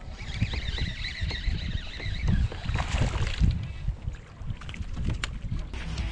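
Wind buffeting the microphone, with the whir of a fishing reel being cranked as a hooked bass is reeled in to the kayak; the reeling stops about two seconds in.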